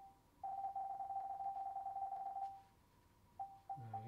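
TV menu navigation beeps from a Sony Google TV as a held button scrolls the selection quickly down a list. The short, high beeps run together into one long tone for about two seconds, then stop, and three separate beeps come near the end.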